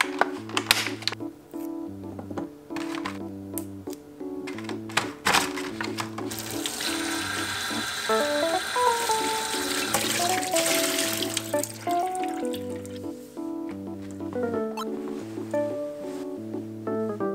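Background music with a steady bass line throughout. In the first few seconds there are sharp clicks from a plastic clamshell punnet of grapes being opened and handled; about six seconds in, a kitchen tap runs onto grapes in a bowl in a steel sink for about six seconds.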